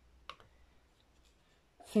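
A single short click about a quarter second in, followed by a few faint ticks, from craft supplies being handled on a tabletop.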